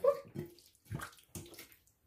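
Wet squelching of a hand mixing chicken pieces in a thick marinade in a glass bowl, in a few short, irregular squishes.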